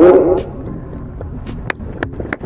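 A man's sermon voice trails off in the first half second, then a pause in which only a steady low background hiss and a few faint clicks remain.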